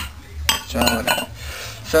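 Steel moped fork tubes and coil springs clinking against each other on a concrete floor, with one sharp clink about half a second in.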